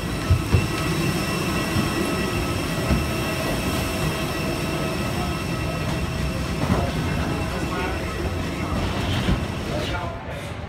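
Steady mechanical whine of several high tones over a low rumble, from the parked airliner and jet-bridge machinery, with a few low thuds on the bridge floor.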